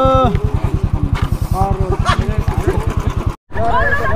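Royal Enfield motorcycle engine idling with an even low pulse of about ten beats a second, with voices over it. A held tone stops just after the start. The sound cuts out briefly near the end and chatter follows.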